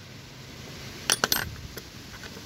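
A few sharp metal clinks a little over a second in, then a fainter one: chrome steel quarter-inch-drive socket extensions knocking against each other and a steel tool tray as one is set down and another picked up.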